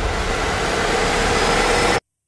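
A noise swell (riser) in the soundtrack music, building slightly in loudness, that cuts off suddenly at the end.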